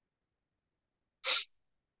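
Near silence, broken a little past a second in by a single short, sharp breath noise from the man at the microphone, lasting about a third of a second.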